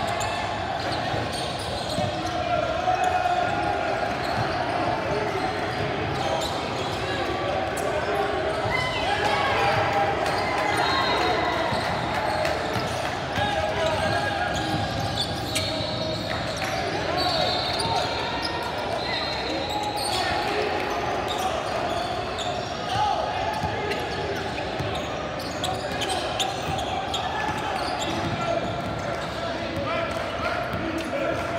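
Basketball game on a hardwood gym court: a ball bouncing again and again, with indistinct shouts and chatter from players and the bench, echoing in the large hall.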